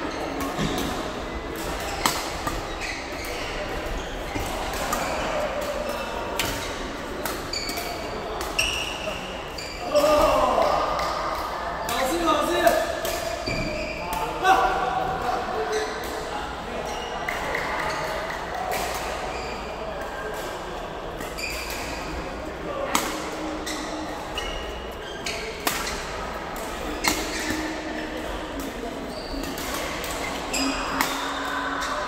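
Badminton rackets striking a shuttlecock in a rally, sharp clicks every second or so, with short squeaks of shoes on the court floor, echoing in a large sports hall.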